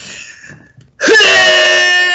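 A man yelling a long, loud, held shout on one steady pitch, starting about a second in.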